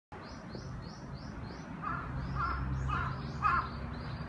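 A crow cawing four times, about two caws a second, the last one loudest, after a small bird's quick run of high chirps.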